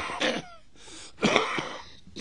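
An elderly man clearing his throat into a close microphone: two rough, coughing bursts, one at the start and another about a second and a quarter in.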